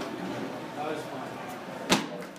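Athletic shoes landing on a hard floor at the end of a standing long jump: one sharp impact near the end, with faint voices in the room behind.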